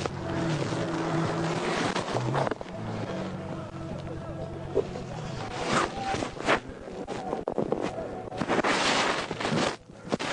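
Road noise beside a highway: a steady low engine hum, with the pitch of passing vehicles sliding up and down in the first half. Several sharp cracks or knocks come in the second half.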